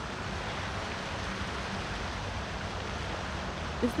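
Steady rushing noise of wind on a phone's microphone outdoors, an even hiss with an unsteady low rumble underneath.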